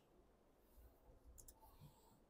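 Near silence: quiet room tone with a few faint clicks about halfway through.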